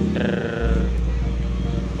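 SAE Audio carnival sound system playing long, low sub-bass notes, mellow but long. A new, stronger bass note comes in about half a second in and holds.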